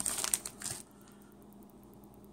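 Plastic trading-card pack wrapper crinkling as the cards are pushed out of it: a short rustle lasting under a second.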